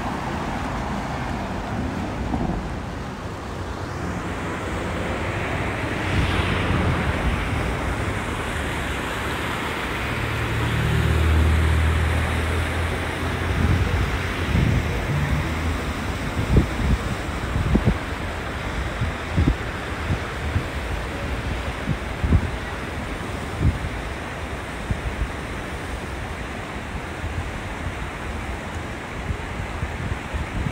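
Steady rush of a shallow, fast river running over gravel bars. Wind buffets the microphone with repeated low thumps, most of them from about halfway on. A low engine hum swells and fades around ten to thirteen seconds in as a vehicle passes.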